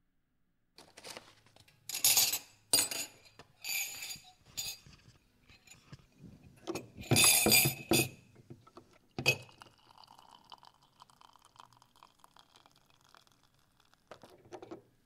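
Teacup and tea things clinking and knocking together as tea is served: a run of clinks over the first several seconds, the loudest near the middle, then one sharp ringing clink about nine seconds in, followed by a softer steady sound.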